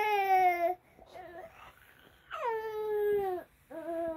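One-year-old baby crying in long wails: one trails off under a second in, another starts a little after two seconds, dropping in pitch at its start, and a third begins near the end.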